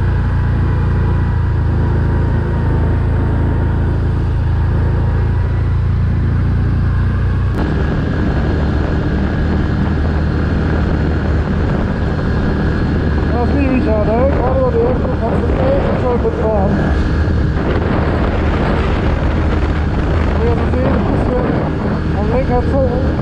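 Can-Am Outlander Max 1000 XTP quad's V-twin engine running under throttle, with tyres rolling on brick paving. The sound turns rougher and denser about seven seconds in as the quad speeds up.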